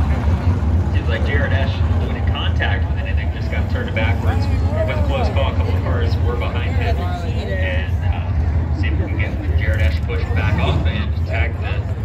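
410 sprint car engines running at low speed in a steady low rumble as the field circles under caution, with spectators' voices nearby.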